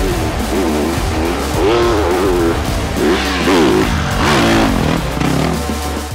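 Background music over enduro motorcycle engines revving, their pitch rising and falling again and again as the throttle is worked.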